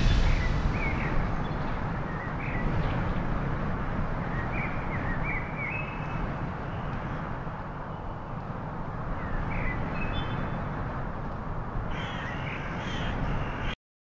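Bird calls, a few brief cries scattered over a steady rushing background, in an ambience bed. A loud swoosh fades out at the start.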